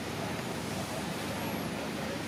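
Steady outdoor background noise, a low rumble with hiss, with a faint short high chirp about one and a half seconds in.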